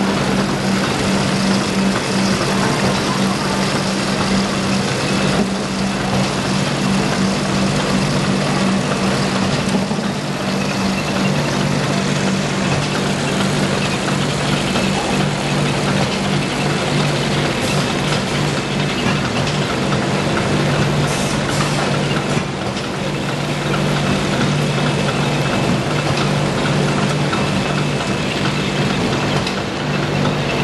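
Automatic paper-stick cotton swab making machine running: a loud, steady mechanical din with a constant low hum under a dense clatter.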